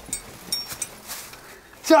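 Faint clicks and light handling noises as items in an open wooden trunk are moved about. A voice starts right at the end.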